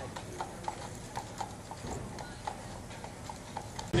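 A carriage horse's hooves clip-clopping on a paved street at a steady walk, about four hoofbeats a second.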